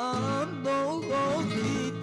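Male flamenco cantaor singing a soleá de Alcalá in a wavering, ornamented line, accompanied by a flamenco guitar.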